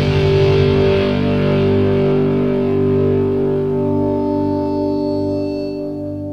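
Rock music ending on a held, distorted electric guitar chord that rings on and slowly fades, with a slow, regular wavering in its low notes.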